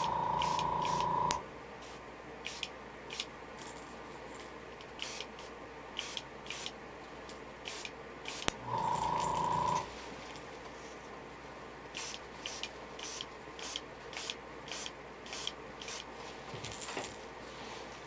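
Airbrush being fired in short quick spurts of air as the trigger is tripped rapidly to spatter paint, with two longer steady blasts about a second long, one at the start and one about nine seconds in.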